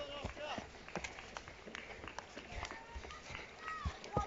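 Irregular footfalls of children running down a steep grassy slope, with faint distant voices calling.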